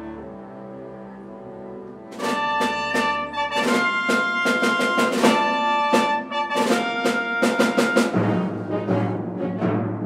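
Live chamber orchestra playing: soft held chords, then about two seconds in the full orchestra comes in loudly with a run of sharp, repeated accents, easing toward a deeper, bass-heavy sound near the end.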